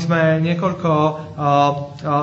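A man's voice speaking Slovak in three slow, drawn-out phrases at an almost level pitch, interpreting the English sermon.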